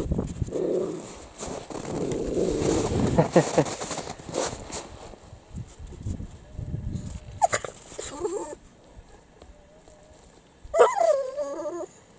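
A puppy and a small dog play-fighting, with rough growling for the first four seconds or so and a short whine past the middle.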